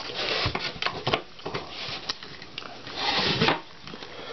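Hands handling and turning a wooden cherry bowl close to the microphone: skin rubbing and scraping on the wood with small knocks and clicks, and a louder rustle about three seconds in.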